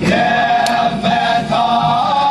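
A group of voices singing together, moving from one held note to the next about twice a second.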